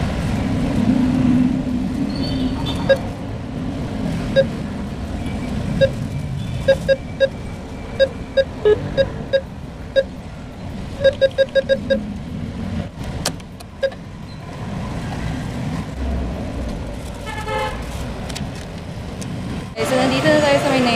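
ATM keypad beeping as buttons are pressed: short, identical single beeps, with a quick run of four about eleven seconds in, over a steady rumble of street traffic.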